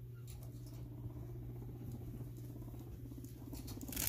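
Guinea pig rumbling: a faint, low, rapidly pulsing purr that runs for about three and a half seconds and fades out near the end. This is the rumble guinea pigs make when asserting dominance.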